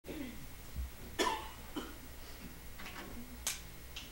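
Quiet room before a jazz combo starts playing: a cough about a second in, faint murmuring, and a couple of sharp clicks, the last one near the end.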